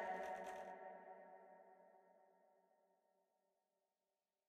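The reverb tail of a vocal run through a BandLab effects preset, a held ringing tone fading out over about a second and a half, then silence.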